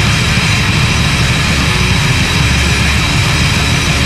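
Extreme metal song: a dense, unbroken wall of heavily distorted guitars and drums.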